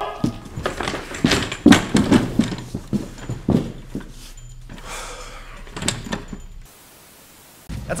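Thuds and the rattle of a metal wheelchair as a man is kicked out of it, mixed with a man's wordless yelling. The sound cuts out for about a second near the end.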